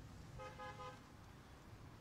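A car horn beeps once, briefly, about half a second in, over a faint low rumble of street traffic.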